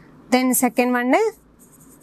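A woman's voice speaking briefly, then the faint, repeated scratching of a pen writing on an interactive smart board.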